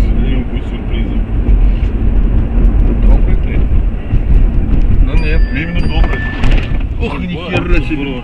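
Loud low rumble of a moving car's road and engine noise, picked up by a dashcam inside the cabin. A voice talks over it from about halfway through.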